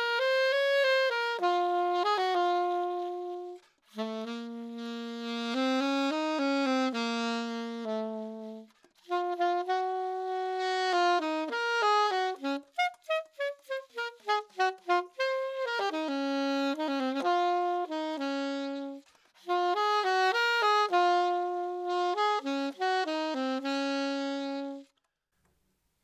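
Alto saxophone playing a slow, mysterious-sounding étude in 9/8 time, in phrases with short breaths between them and a run of quick short notes stepping downward midway. One E-flat is missed along the way.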